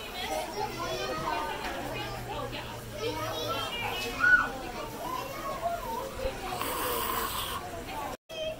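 Background chatter of several children's and adults' voices, none of it clear speech, with a brief hiss near the end.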